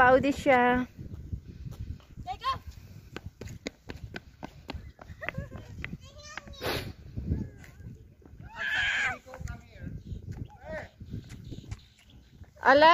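Low, uneven rumble of wind on the microphone, with a few short voice calls and scattered light clicks.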